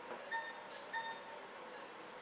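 Two short, faint electronic beeps from operating-room equipment, about 0.7 seconds apart, over a low background hum.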